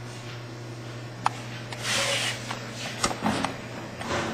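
Steady low hum from a Sorvall Super T21 refrigerated centrifuge standing with its rotor still, its cooling already running. A sharp click comes about a second in, followed by rustling and a few clicks from the lid and chamber being handled.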